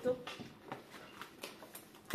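Faint rustling and a few light clicks and knocks of packaged groceries being handled, as a plastic meat tray is put down and the next item is reached for.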